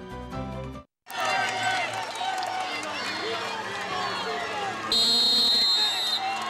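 Station-ID music cuts off about a second in, and after a brief silence a basketball arena crowd chatters. Near the end a loud, high, steady tone sounds for about a second, a whistle or horn blast at the restart of play.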